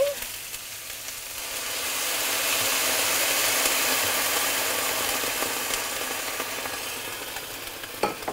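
White wine poured into a hot stainless steel sauté pan of cherry tomato, olive and garlic sauce, sizzling as it hits. The hiss builds over the first couple of seconds, is loudest in the middle and slowly fades.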